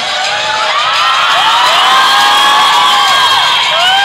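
An audience of students cheering and whooping, many high voices overlapping in rising and falling shouts over a general crowd roar, loudest around the middle.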